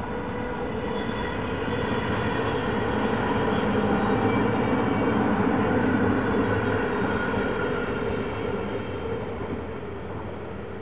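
NS ICMm 'Koploper' electric multiple unit passing at speed: wheels running on the rail with a steady multi-tone hum over the rumble. It grows louder to a peak around mid-pass, then fades as the train moves away.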